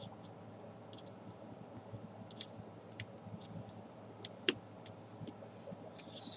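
Origami paper being folded and creased by hand: scattered soft crinkles and clicks, with one sharp tap about four and a half seconds in, over a low steady hum.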